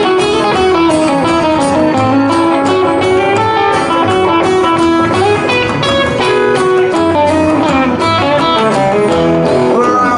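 Solid-body electric guitar of the Telecaster type playing a lead break over a live band, with a walking bass line underneath and no singing.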